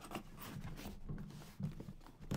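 Faint handling noise: a cardboard box being picked up and moved, with light rubbing and a few small knocks.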